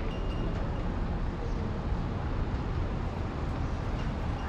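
Steady outdoor street background noise with a low rumble, with no clear single event.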